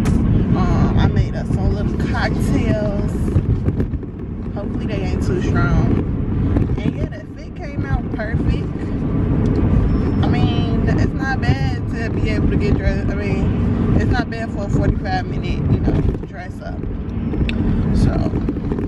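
Steady low road and engine rumble inside a moving car's cabin, with a woman's voice carrying on over it and dipping briefly twice.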